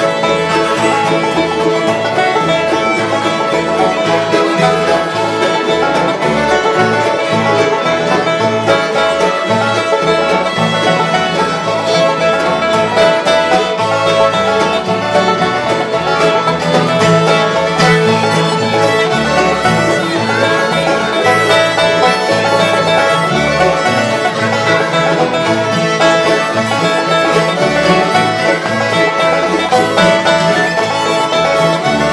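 Live acoustic bluegrass band playing an instrumental tune, with banjo, acoustic guitar, mandolin, two fiddles and harmonica playing together at a steady tempo.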